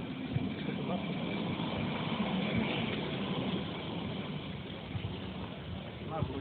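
Street noise: indistinct voices of people close by, with a motor vehicle running.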